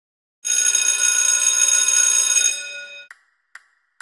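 A bright, bell-like ringing, loud and steady for about two seconds and then fading out, followed by two short clicks.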